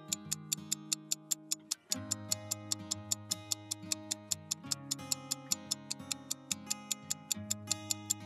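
Ticking clock sound effect, about four ticks a second, over soft background music, marking a countdown timer. The sound drops out briefly just before two seconds in, then resumes.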